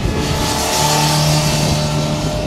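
2006 Kawasaki Ninja ZX-10R's inline-four engine running hard at high revs as the sportbike rides through a corner close by. It swells in loudness right at the start, then holds loud at one steady pitch.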